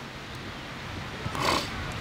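A steady low background hiss, with one short, breathy breath by a man about a second and a half in.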